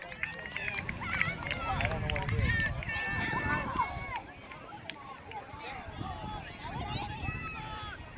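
Distant, scattered shouts and calls from players and people on the sidelines of an outdoor youth soccer game, with a low rumble of wind on the microphone that swells a couple of seconds in.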